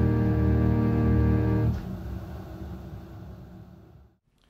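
Organ holding the final chord of the prelude, a full chord with a deep bass, released about two seconds in; the sound then dies away over the next two seconds.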